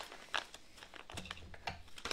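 Faint handling noises of a small plastic jar with a red lid: a few light clicks and some crinkling as it is picked up and its lid worked by hand.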